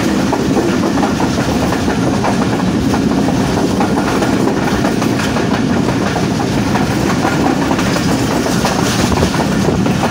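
Pakistan Railways passenger coach running at speed, heard at its open doorway: a steady rumble of wheels on the rails with a light clickety-clack running through it.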